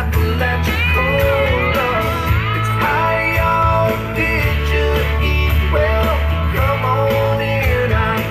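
Country-rock music with guitar, playing steadily.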